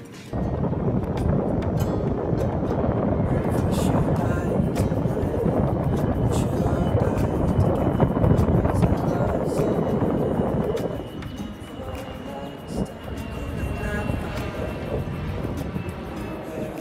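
Wind rushing over the microphone while riding a bicycle, a loud low roar that drops to a quieter level about eleven seconds in.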